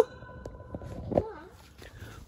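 Reverberation of a shouted "hello" hanging on in a long brick railway tunnel, fading out over about half a second. About a second in there is a brief, faint voice.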